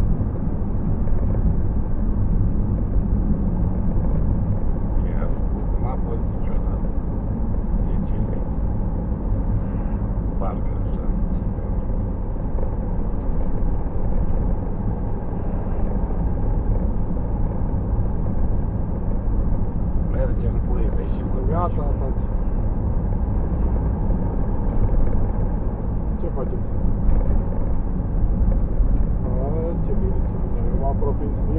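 Steady drone of a car's engine and tyres heard from inside the cabin while driving at road speed.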